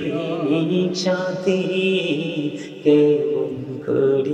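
A man singing a Bengali gazal, an Islamic devotional song, into a stage microphone, in slow phrases with long held notes.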